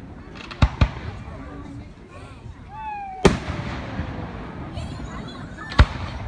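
Aerial firework shells bursting: four sharp booms, two in quick succession just under a second in, one a little past three seconds and one near the end.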